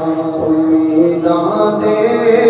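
Man singing a devotional kalam into a microphone, holding long drawn-out notes; the held note slides up to a higher one near the end.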